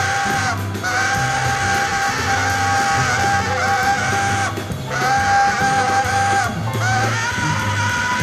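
Live jazz quartet playing: a tenor saxophone holds long, high sustained notes in phrases over piano, double bass and drums.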